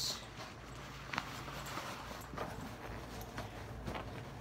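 Faint handling noise: fabric rustling and a few soft knocks as a pair of cheer shoes is pushed into a backpack's shoe pouch.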